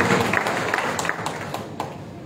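Audience clapping, a scatter of hand claps that dies away over about two seconds.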